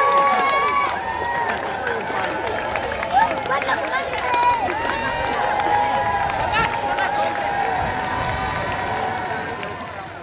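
A large street crowd cheering and shouting, many voices calling over each other, fading out at the very end.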